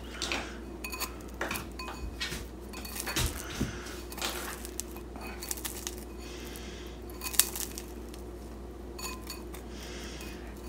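Metal fork scraping and clinking against a ceramic bowl in scattered short strokes as it pries a sticky rice crispy treat loose, with one sharper clink about seven seconds in.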